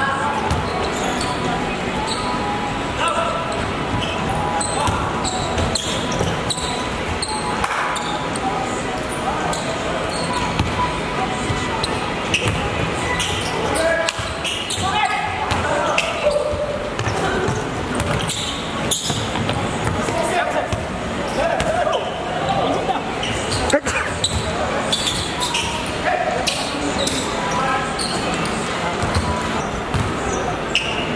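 A basketball game in a large indoor hall: the ball bouncing on the court in repeated knocks, over players' indistinct shouts and chatter echoing around the hall.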